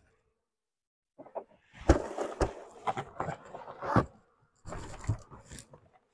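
Handling noise from a beekeeper picking up and moving a bee nuc box: rustling and knocking with several sharp thumps, starting about a second in.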